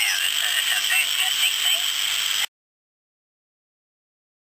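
A ham operator's voice received on 80 metres through an amplified crystal set with a beat frequency oscillator. It sounds thin and narrow over hiss, and cuts off abruptly about two and a half seconds in.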